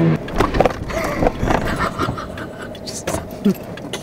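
People laughing in short, broken bursts inside a car, over the low noise of the cabin.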